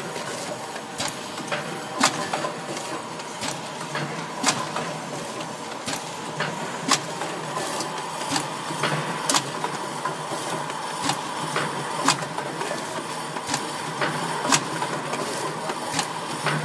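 Vertical pouch packing machine with a vibrating hopper running: a steady hum, with sharp clicks from its mechanism at uneven intervals of roughly one to two a second.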